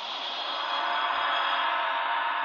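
A steady ambient drone from a documentary soundtrack: a sustained airy wash with faint held tones in it, swelling slightly over the first second.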